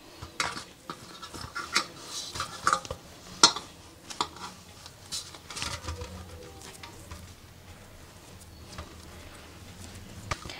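Irregular light taps and clicks of hands and soft dough against a steel plate as small pieces of dough are pinched off and set down. The sharpest tap comes about three and a half seconds in, and the taps thin out in the second half.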